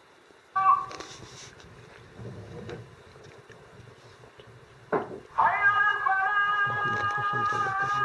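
A brief pitched cry about half a second in. Then, from about five seconds in, a voice holds one long, steady sung note.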